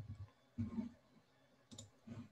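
A near-quiet pause on a video call, broken by a few faint, short clicks and low bumps from a participant's microphone.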